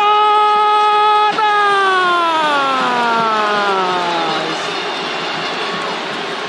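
A sports narrator's long held goal cry over stadium crowd noise: one sustained note that holds for about a second, then slides slowly down in pitch and fades out over the next three seconds.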